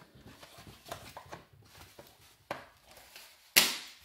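Hollow plastic toy leg being handled and pushed into the hip of a Mattel Super Colossal Carnotaurus figure: faint rubbing and a few light knocks, then one loud, sharp plastic click near the end as the leg snaps into place.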